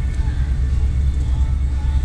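A loud, steady low rumble.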